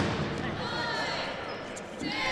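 Dodgeball game noise in a large gym: players' voices shouting across the hall over a steady background of court noise, with a few faint rubber-ball knocks on the hardwood floor late on.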